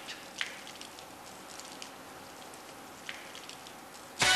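Quiet steady hiss with a few faint ticks.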